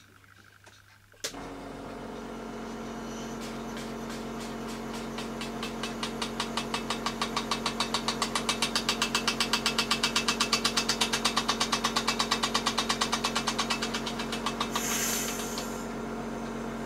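A small air compressor switches on with a click about a second in and runs with a steady hum. Over it the Märklin donkey engine's small piston engine works on compressed air with a rapid, regular beat that builds, peaks and fades, and a short hiss of escaping air comes near the end. The engine runs weakly because its piston and cylinder are worn and let the air leak past.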